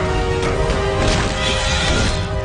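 Dramatic orchestral film score with sustained tones. A short hit comes about half a second in, and a high shrill cry or screech rises over the music in the second half.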